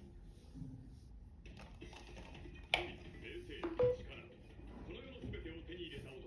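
A sharp click about three seconds in, then a short beep a second later, over faint voices in a small room.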